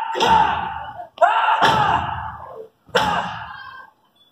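Three sudden, loud bursts of amplified show sound in an open-air stunt arena, each with a deep low end and a voice-like pitch, each fading out over about a second.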